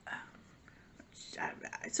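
A woman's short hesitant "uh", a quiet pause, then faint breathy mouth sounds as she gets ready to speak again.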